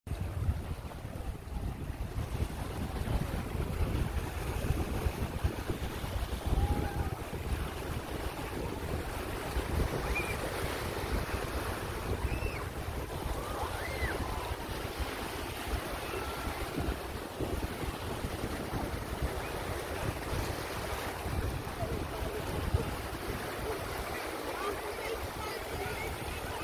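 Small waves washing in over a flat sandy beach, with wind buffeting the microphone, gustier in the first several seconds. Faint distant voices call out now and then.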